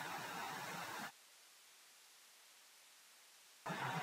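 Faint steady hiss of a microphone's background noise in a pause between speech, gated to dead silence about a second in and coming back near the end.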